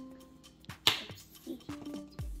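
Background music with soft held notes, and a sharp click a little under a second in.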